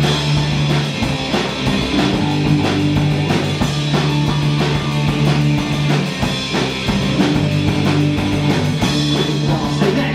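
Live punk rock band playing an instrumental passage: electric guitar, electric bass guitar and drum kit, with a steady drum beat and no vocals.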